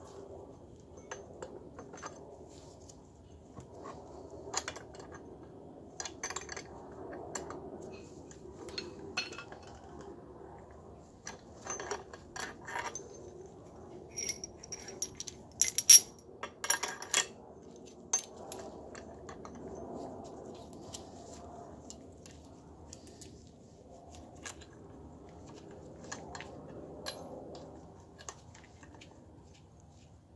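Steel parts of a threaded wheel-bearing press tool, its nut and a new wheel bearing clinking and clattering as they are handled and fitted against a cast knuckle, with scattered light clicks and a louder cluster of clinks about halfway through.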